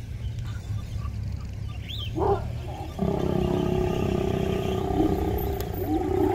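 A lion growling while mating: a short growl about two seconds in, then a long, steady, low growl from about three seconds on. A low rumble runs underneath.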